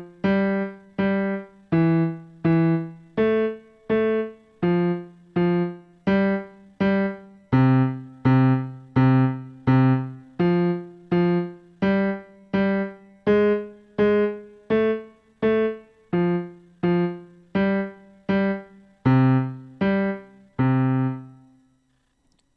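Yamaha digital piano playing a left-hand bass line alone: an even run of single low notes, mostly repeated in pairs (fa fa, sol sol), each struck and fading, with a longer held note at the end.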